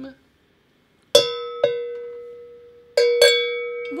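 A hand-held metal bell is rung four times in two pairs: two strikes about a second in and two more near the end. Each strike rings on with a clear pitch and dies away slowly. It is rung as the call for "cracker time".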